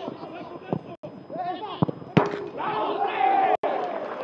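Footballers shouting and calling on the pitch, with sharp thuds of a football being kicked; the hardest kick comes about two seconds in, after which the shouting grows louder.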